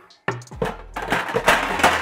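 Metal sheet trays clattering and scraping as one is pulled out from a low kitchen cabinet, with the noise building in the second half, over background music.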